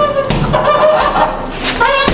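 Bare feet squeaking on a rubber floor mat as a Muay Thai fighter switches stance and pivots into a roundhouse kick: short pitched squeaks, ending in a rising squeal as the standing foot turns.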